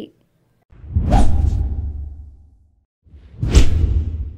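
Two whoosh transition sound effects over a deep rumble. Each swells quickly and then fades; the second comes about three seconds in.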